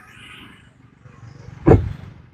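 Faint background noise, then about a second and a half in a man's voice gives one short, loud syllable.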